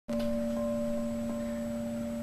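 Frosted quartz crystal singing bowl ringing with one steady sustained tone and a fainter higher overtone, fading slowly.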